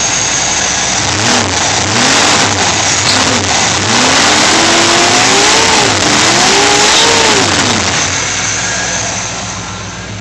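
1982 Camaro's carbureted 305 cubic-inch V8 crate engine, free-revving with no transmission fitted: it blips the throttle three quick times from idle, then two longer revs held high, and settles back to idle near the end.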